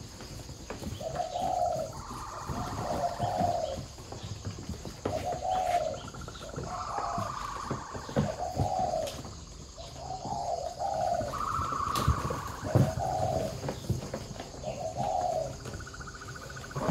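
Spotted doves cooing over and over, a call about every second, with some higher-pitched calls overlapping the lower ones, so more than one bird is calling. A few sharp knocks come near the end.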